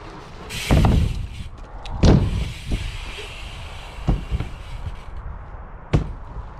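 Dirt jump bike ridden on a wet skatepark ramp: a loud rush of tyres rolling up the ramp about a second in, then a sharp landing hit at about two seconds, and a few lighter knocks later, over a steady low rumble.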